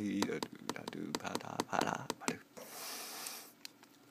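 Fingertip taps on an iPad touchscreen at about four to five a second, keeping time with a man's rhythmic singing, both stopping a little over two seconds in. A short burst of hiss follows.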